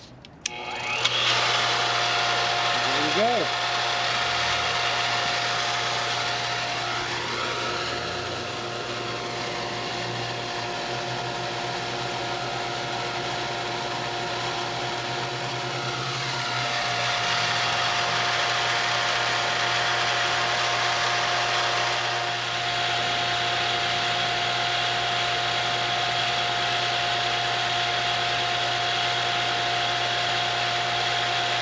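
Three-quarter horsepower Flotec water pump's electric motor kicking on suddenly as the pressure switch cuts in, then running steadily with a hum and a whine, powered by a Bluetti AC200P battery power station that is carrying the pump's load.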